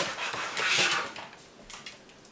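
Household pets making noise: a short rustling, scuffling burst that is loudest about three quarters of a second in, then dies away.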